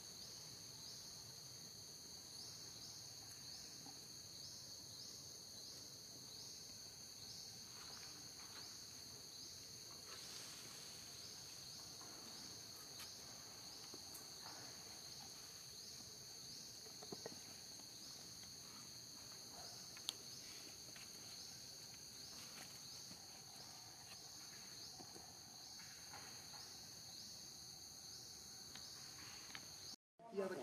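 Faint, steady high-pitched insect chorus, pulsing regularly about once or twice a second. A few soft clicks are heard, the sharpest about twenty seconds in.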